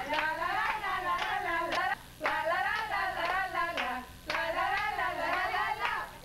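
Women's voices singing together in Spanish, with hand claps breaking in. The singing stops briefly about two seconds and four seconds in, between lines.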